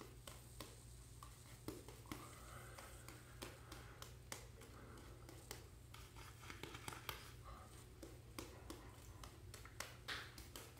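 Faint, irregular scratching of a double-edge safety razor cutting stubble through shaving lather, in short strokes a few times a second.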